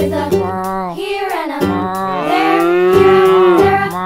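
A cow mooing twice over a children's song backing track with a steady beat: a short falling moo about a second in, then a long one held to near the end.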